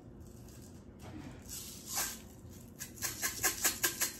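Sprinkles rattling in a plastic shaker jar as it is shaken over a milkshake: a quick run of rattles from about three seconds in, after a mostly quiet stretch.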